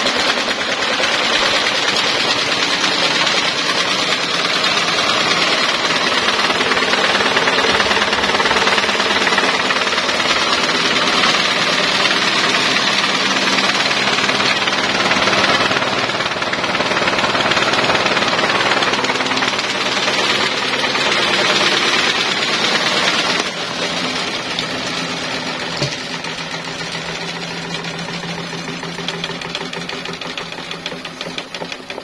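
Electric stand fan spinning a homemade solid disc fitted in place of its blades, running with a loud, fast rattle and whir. The sound gets somewhat quieter a little over two-thirds of the way through, with a single click shortly after.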